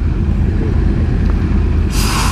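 Motorcycle engine idling steadily with a low, even rumble; a loud hiss starts right at the end.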